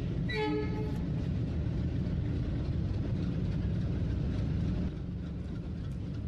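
Radio-drama sound effect of a train running: a steady low rumble, with a short horn blast about half a second in. The rumble drops slightly in level near the end.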